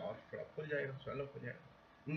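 Only speech: a man talking in a small room, trailing off into a short pause near the end.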